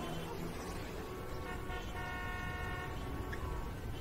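A faint, steady pitched tone over low background noise, starting about a second and a half in and held for about two seconds.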